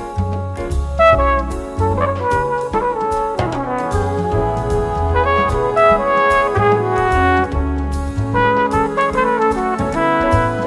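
Jazz big band playing an instrumental passage: the trumpet and trombone sections hold chords that change every second or so, over bass and drums with cymbal strokes on a steady beat.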